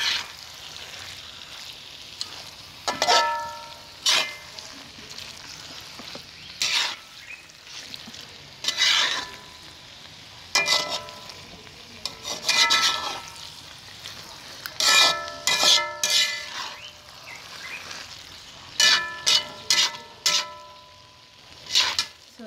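Slotted spatula stirring and scraping a thick vegetable soup around a metal pot. The irregular scrapes make the pot ring briefly, over a steady low sizzle of frying.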